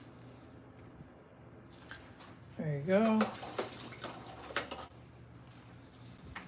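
A man's brief wordless vocal sound, a short rising hum about halfway through, with a few light clicks and taps around it.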